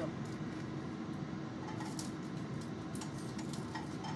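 Steady low hum and hiss of kitchen background noise, with a few faint clicks.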